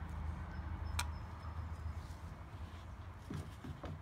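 Faint rubbing of a wet gloved hand smoothing soft epoxy putty over a steady low hum, with a single sharp click about a second in.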